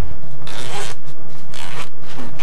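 Zipper on a fabric bag being pulled open in two quick strokes, each about half a second long.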